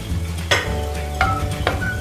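A wooden spatula stirring a kovakka (tindora) curry in a clay pot, with a few sharp knocks against the pot, the first about half a second in, over the sizzle of the curry cooking.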